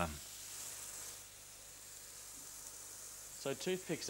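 Meat rolls and chopped tomatoes frying in olive oil in a pan, with a steady sizzle.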